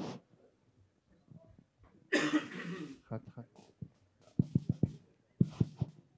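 A loud, breathy burst picked up close on a handheld microphone, lasting nearly a second, then a quick string of short taps and knocks as the microphones are handled and readied for a test.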